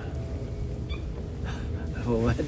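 Quiet outdoor background with a steady low rumble, and a faint brief high sound about a second in.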